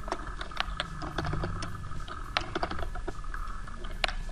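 Typing on a computer keyboard: a run of irregular, quick key clicks.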